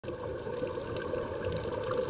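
Underwater ambient sound recorded from a diver's camera: a steady low, muffled rush of water with faint, scattered ticks and clicks above it.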